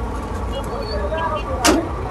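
Steady low background rumble with faint distant voices, and one short rasping noise about a second and a half in.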